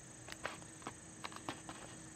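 Scattered sharp clicks and ticks at irregular intervals, over a steady high-pitched drone typical of insects in grass.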